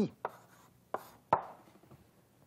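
Chalk striking and scraping on a blackboard as an equation is written: three short, sharp taps, the last and loudest about a second and a half in.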